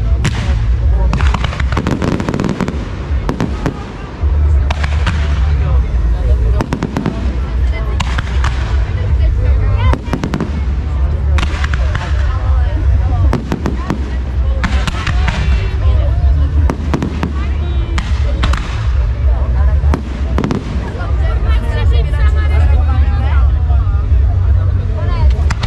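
Fireworks display: a rapid, continuous run of bangs from bursting shells and comets, with crackling near the end.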